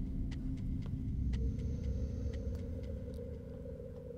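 Low rumbling ambient drone from the cartoon's opening warning card, with scattered faint crackles; one held hum drops out early and a higher hum comes in about a second and a half in, and the whole slowly fades.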